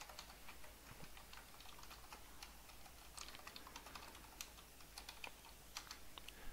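Faint typing on a computer keyboard: irregular quick key clicks.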